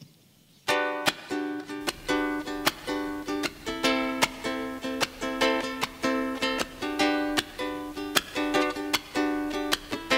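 Ukulele strummed in a steady rhythm of chords, starting suddenly about a second in as the instrumental intro of a song begins.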